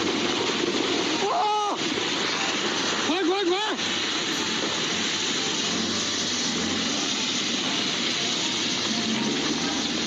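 Landslide on a steep mountainside: a steady rushing noise of rock and debris pouring down the slope, heard through a phone's microphone, with a person briefly exclaiming twice.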